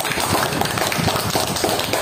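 A room of schoolchildren clapping: many quick, irregular hand claps.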